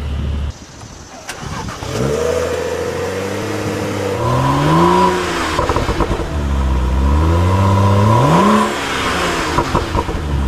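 A car engine revving: its pitch climbs from about two seconds in, peaks, falls back, then climbs to a second peak and drops shortly before the end.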